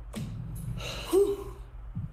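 A man's breathy gasp, then a short voiced exclamation with a falling pitch about a second in, over a steady low hum.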